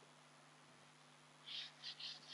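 A whiteboard eraser rubbing across the board in quick back-and-forth strokes, about three or four a second, starting about one and a half seconds in. Before that there is near silence with a faint steady hum.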